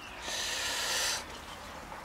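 A person breathing out sharply: a breathy hiss of about a second that stops just past the middle.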